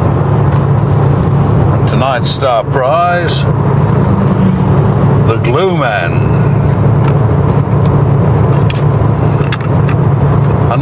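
Inside the cabin of a moving Mercedes-Benz car: a steady low engine and road drone, with two short bursts of a voice about two and six seconds in.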